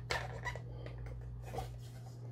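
Hard plastic diorama pieces handled and fitted together by hand: a few faint clicks and light rubbing over a steady low hum.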